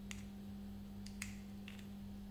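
A few light, sharp clicks and taps from a plastic Beyblade top being handled and turned over against its launcher, the clearest just after the start and about a second and a quarter in, over a steady low hum.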